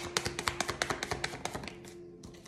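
A tarot deck being shuffled by hand, the cards slapping against each other in a rapid run of light ticks, about eight to ten a second, that thins out and fades near the end.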